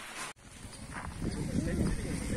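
Indistinct voices over a low rumble of outdoor ambience, after the sound breaks off abruptly about a third of a second in.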